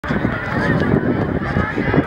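Calls and shouts from players and spectators around a youth football pitch, over a steady low rumble.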